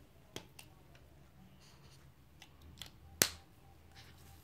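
A few light clicks and one sharp, louder click a little after three seconds in, from a pen and paper sticky notes being handled on a desk.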